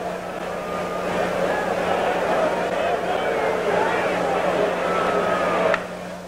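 Ballpark crowd murmur over a steady low electrical hum on the old broadcast audio; near the end, one sharp crack of a bat hitting a hanging curveball for a home run.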